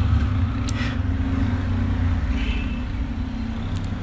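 A steady low engine drone from a motor running nearby, with no change in pitch across the pause.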